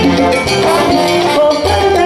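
Live salsa orchestra playing an instrumental passage: a trombone section carries the melody over a bass line that holds long low notes, with congas, timbales and shakers keeping the rhythm.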